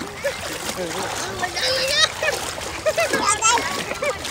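Shallow lake water splashing as a toddler paddles and kicks with an adult moving beside him, mixed with voices and a child's high excited calls.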